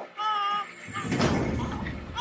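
A baby gives a short, high-pitched cry. About a second in, it gives way to a rustle and bump of handling noise.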